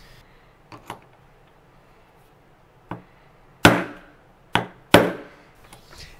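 Hammer striking the Lee Loader die resting on a wooden block, crimping the cartridge case mouth around the bullet: a few light knocks as the die is set down, then three sharp blows from about halfway through.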